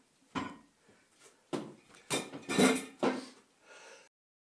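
A series of about five metallic clanks and knocks, the loudest about two and a half seconds in, from home-gym equipment: the cable machine's bar and weight plates being handled and set down.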